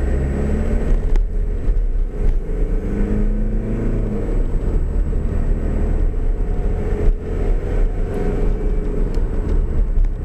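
Vehicle engine running with steady road rumble, heard from inside the cab through a dashcam microphone, the engine note shifting a little a few seconds in as the vehicle pulls along the road. A faint steady high-pitched whine sits over it throughout.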